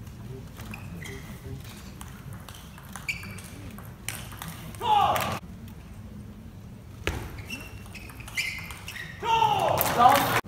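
Table tennis ball knocked back and forth in a rally, each hit a short ringing ping off bat or table. A loud shout rings out about five seconds in and again near the end.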